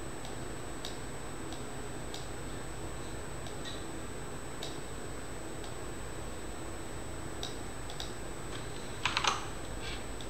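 Scattered single clicks from a computer mouse and keyboard, with a quick cluster of louder key presses about nine seconds in, over a steady faint room hum.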